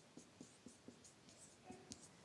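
Near silence with faint dry-erase marker strokes on a whiteboard: a string of small ticks, about four a second.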